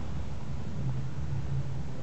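Steady low rumble with a faint even hiss of background noise, with no distinct event.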